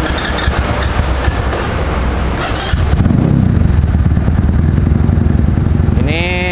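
SGM Diablo supermoto's motorcycle engine running in neutral, with a few light clicks in the first seconds; about three seconds in the engine note swells and it keeps running louder.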